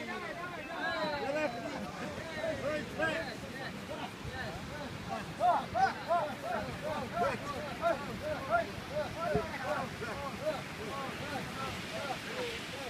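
Fishermen's voices calling out in short repeated shouts, in a steady run of about two a second through the middle, while they haul a wooden outrigger boat up the beach.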